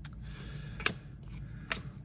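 A stack of hockey trading cards being flipped through by hand, with two sharp card-edge snaps a little under a second apart.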